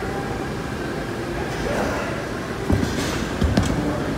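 Steady gym room noise with faint voices in the background, and a few heavy low thumps in the last second and a half.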